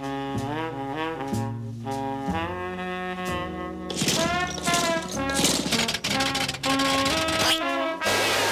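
Cartoon score: a jaunty brass and saxophone melody moving in quick stepping notes, with a rushing noise joining the music about halfway through.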